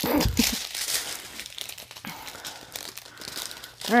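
Small clear plastic bags of diamond-painting drills crinkling as they are handled and sorted, loudest in the first second and then fading to a softer, irregular rustle.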